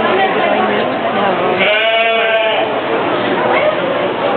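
A sheep bleats once near the middle, a single wavering bleat lasting about a second.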